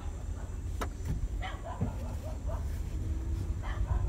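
A Toyota car being driven, heard from inside the cabin: a steady low rumble of engine and road, with one sharp click just under a second in.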